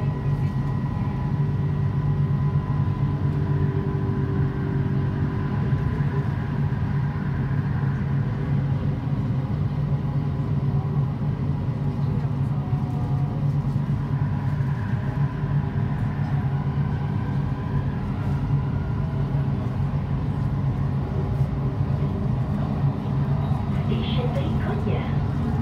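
Interior running noise of a driverless Kelana Jaya Line LRT train moving along elevated track: a steady low rumble with a faint constant whine.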